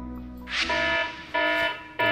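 Electronic alert tone beeping in short repeated bursts less than a second apart, starting about half a second in: an alarm ringing for an incoming emergency report call.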